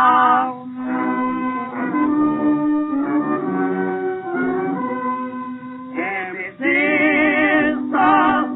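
A Yiddish theater song with a singer and a brass-led band. A sung line ends about half a second in, the band plays a short interlude of held notes, and the voice comes back in with a strong vibrato about six seconds in. The sound is dull, with no high treble.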